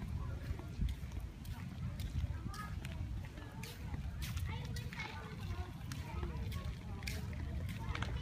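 Faint, indistinct voices of people nearby on the walkway, over a steady low wind rumble on the microphone.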